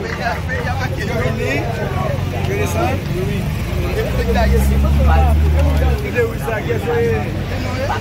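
Many people talking at once over a running vehicle engine. The engine grows louder for about two seconds around the middle.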